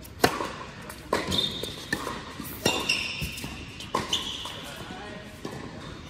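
Tennis racket strings striking the ball through a serve and a short rally on an indoor hard court: a loud serve hit just after the start, then about four more hits roughly a second apart, echoing in the hall. High shoe squeaks on the court follow several of the hits.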